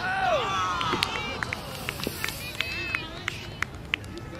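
Several people shouting and calling out across an outdoor soccer field during play, in short rising-and-falling cries, with a scatter of short sharp knocks among them.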